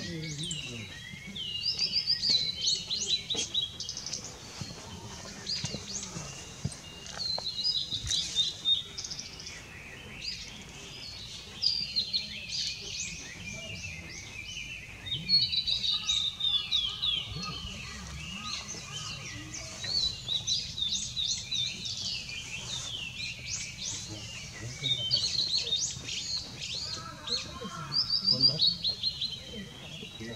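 Male blue-and-white flycatcher singing: a series of short, high, warbled phrases of quickly changing pitch, repeated every few seconds with brief pauses between them, over a faint low background rumble.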